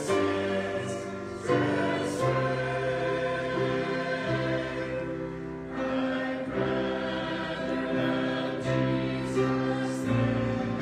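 Mixed choir of men's and women's voices singing in parts, with held chords changing about once a second.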